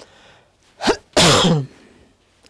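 A woman's sudden breathy outburst: a quick catch of breath, then a loud, noisy burst of voice that falls in pitch and lasts about half a second.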